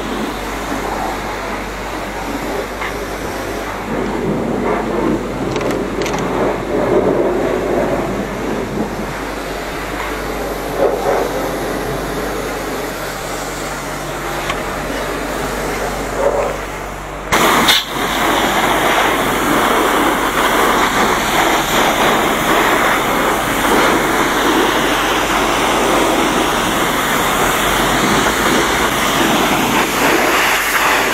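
Self-service car-wash pressure-washer lance spraying water onto a bicycle: a steady, loud hiss that begins with a click a little past halfway, after lower, uneven background noise.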